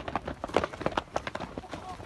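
Footsteps on a dry dirt path: a quick, irregular series of sharp steps, several a second.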